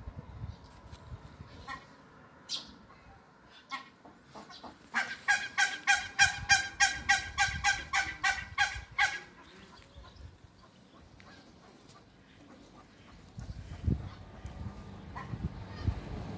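A duck quacking in a rapid, evenly paced run of about three loud quacks a second, starting about five seconds in and lasting some four seconds. Faint scattered clicks come before it.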